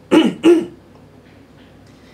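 A man clearing his throat: two short, loud rasps in quick succession, about a third of a second apart.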